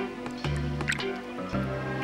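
Background music with a bass line stepping from note to note about twice a second, over wet dripping and splashing of milk as a dog's tongue laps from a bowl.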